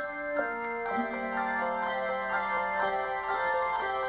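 Handbell choir ringing a piece: handbells struck one after another, their notes overlapping and ringing on, with a low bell note held through the middle.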